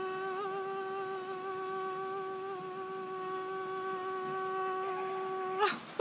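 A woman's voice chanting one long held note at a single mid-high pitch, with a slight waver at the start and a drop near the end, followed by a short louder sound.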